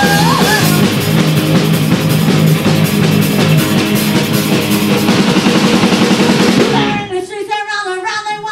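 Punk rock band playing live: two distorted electric guitars, electric bass and drum kit, with a woman singing lead. About seven seconds in, the instruments cut out and the singing voice carries on alone.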